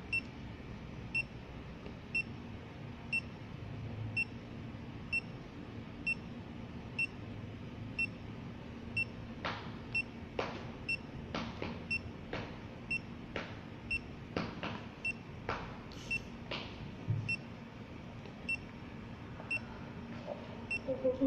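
Short, high electronic beep repeating about once a second, like a heartbeat. About halfway through comes a run of sharp button clicks, roughly one a second for several seconds, from keys pressed on the Nikon total station's keypad to page through its stored records.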